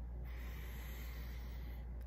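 A man breathing in slowly through his nose: a faint, soft airy hiss lasting about a second and a half, a normal unforced in-breath.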